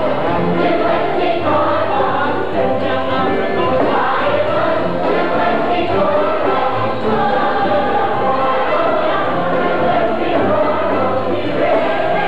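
A stage musical's chorus singing together with musical accompaniment in a lively ensemble number.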